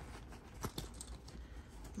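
Faint rustling and a few light clicks of fingers rummaging inside a zippered leather handbag pocket.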